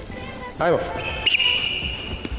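Basketball bouncing on a sports-hall floor, with a sharp knock about a second in, followed by a steady high tone held for under a second.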